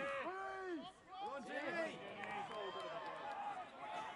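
Several men's voices shouting over one another with no clear words: players' and touchline calls during open rugby play.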